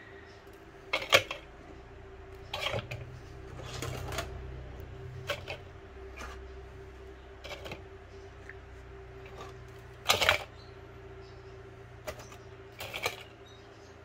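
Loose bundles of enamelled copper winding wire dropped one by one into a plastic scale bowl: a series of rustling, clattering impacts, about eight in all, the loudest about ten seconds in, over a faint steady hum.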